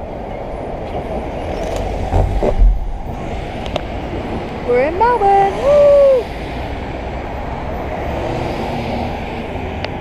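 Steady tyre and wind noise from a car driving at road speed. About five seconds in, a person's voice calls out briefly, its pitch rising and falling.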